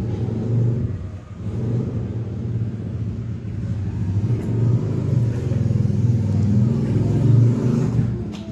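A motor vehicle engine running, a loud, low rumble that grows a little louder near the end.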